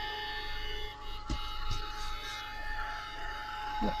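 Tim Holtz heat gun running, its fan motor giving a steady whine made of several tones over a low rush of air, with two light knocks about a second and a half in.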